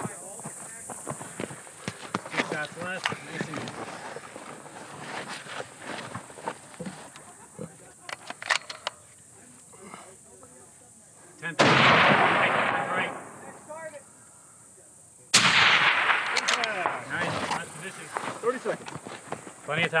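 Two rifle shots from a scoped precision rifle, a little under four seconds apart, each a sharp crack followed by a long echo rolling back over about a second and a half.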